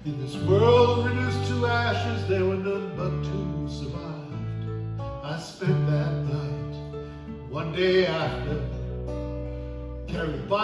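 Two acoustic guitars and an electric bass guitar playing a slow country-folk song. The bass holds low notes that change every second or so, and a man's voice sings over the strumming.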